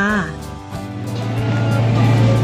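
A boat's engine running with a steady low hum that comes in a little under a second in and holds, under background music.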